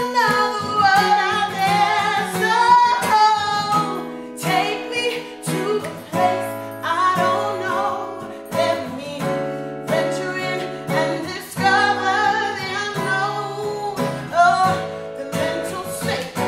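A woman singing a slow, soulful song, accompanied by a plucked acoustic guitar.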